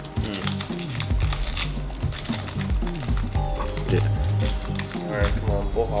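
Foil booster-pack wrapper crinkling and tearing as it is peeled open by hand, over background music with a low, steady bass line.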